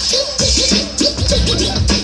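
Hip-hop DJ scratching a vinyl record on turntables over a beat, heard through stage loudspeakers: quick back-and-forth pitch sweeps, with a kick drum landing about twice a second underneath.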